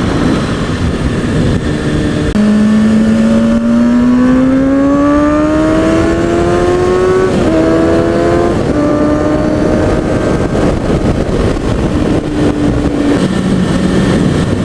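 A 2003 Kawasaki ZX-6R 636's inline-four engine, heard from the rider's helmet over steady wind noise. A couple of seconds in, its note climbs steadily for about five seconds as the bike accelerates, then holds at a lower steady pitch and drops again near the end.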